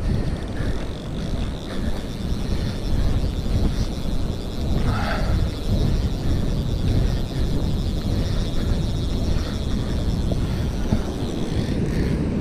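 Wind buffeting the microphone as a steady low rumble, with a brief faint higher sound about five seconds in.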